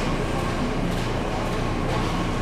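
Steady background noise of a large supermarket: an even low hum with hiss, with a couple of faint clicks.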